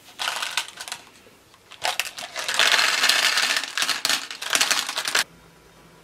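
Blue glass decorative gems poured from a ceramic bowl into the shallow planter top of an essential oil diffuser, clattering against each other. A short spill comes first, then a longer, denser pour starting about two seconds in that stops abruptly about a second before the end.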